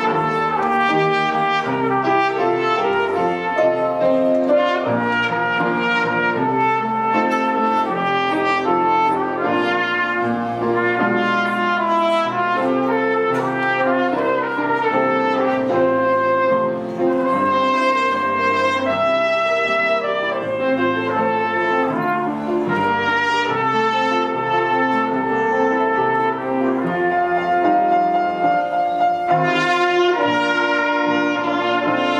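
Small brass ensemble, French horns among them, playing music of held notes that move together in chords.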